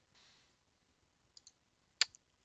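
Near silence: faint room tone, with two tiny ticks about a second and a half in.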